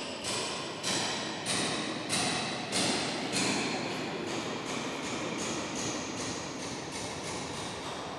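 Bells ringing in a quick run of strokes, roughly one and a half a second, each stroke ringing on into the next. The strokes are crisp at first and merge into a continuous ringing in the second half.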